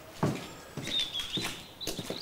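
Footsteps on a hard hallway floor, an unhurried walk of about two to three steps a second. A faint high chirping starts about halfway through.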